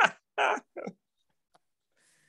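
A man's short, breathy laugh and a murmured "uh" in the first second, then dead silence.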